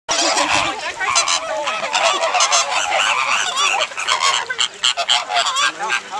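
A large flock of flamingos calling all together: a loud, continuous chorus of many short calls overlapping one another.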